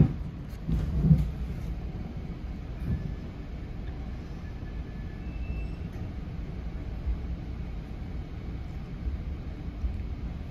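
Steady low rumble of an NJ Transit passenger train heard from inside the coach while under way, with a couple of louder thumps in the first second or so.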